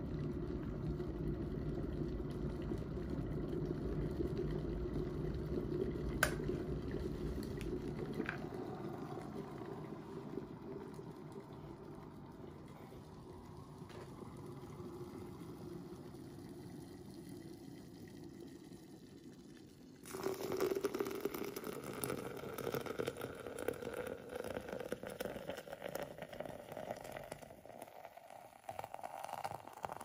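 Cosori glass electric kettle boiling, a sharp click about six seconds in, then the boil dies away. About twenty seconds in, hot water is poured from the kettle onto coffee grounds in a stainless steel Brutrek French press; the pitch rises as the press fills, in the first pour that wets the grounds before topping off.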